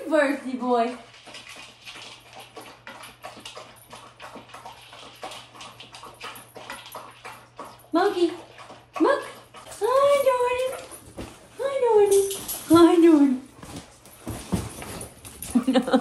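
Excited dog whining in greeting: several drawn-out whines that rise and fall in pitch from about halfway in, after a patter of clicks and rattles.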